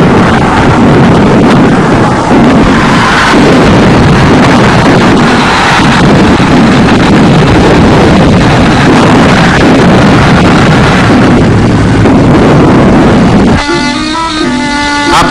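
Battle sound effects on an old newsreel soundtrack: a loud, continuous rough roar of combat noise with no single shot standing out. It cuts off just before the end as music comes in.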